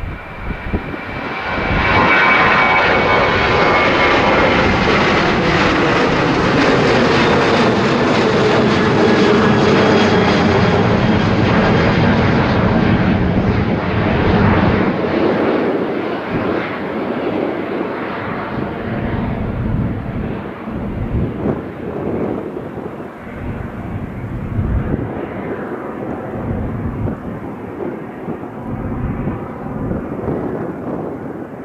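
Boeing 737 airliner taking off: the jet engines' roar swells about a second in and stays loud, with a whine sliding down in pitch. Over the second half it gradually fades as the jet climbs away.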